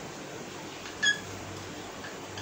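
A whiteboard marker giving one short, high squeak about a second in as it writes on the board, over low steady room tone with a faint hum.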